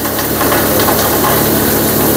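Motor-driven chaff cutter running steadily while chopping dry maize stalks for cattle feed: a steady low hum under a dense, noisy rush of cutting.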